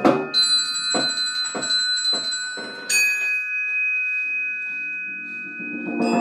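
Chamber music: glockenspiel notes struck and left to ring, with about four short percussion strokes under them. A second high bell-like note is struck about three seconds in and rings on while a faint low tone enters near the end.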